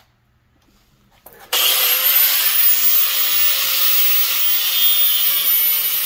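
Angle grinder with a thin cut-off wheel starting about a second and a half in, its whine climbing quickly to a steady high pitch, then cutting into a metal piece clamped in a bench vise; loud and steady.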